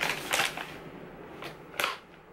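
Plastic dog-treat bag crinkling as it is handled and pulled open: a half-second burst of crackling at the start and a shorter one near the end.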